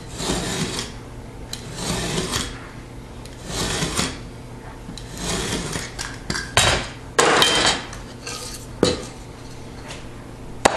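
A utility knife scoring sheetrock along a metal straightedge: about five scratchy strokes, each under a second, roughly every second and a half. Louder scrapes and a sharp knock follow in the second half.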